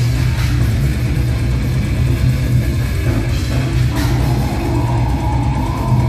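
Metal band playing live, loud and dense: distorted electric guitars, bass and drum kit. From about four seconds in, a held high note rises slightly over the band until near the end.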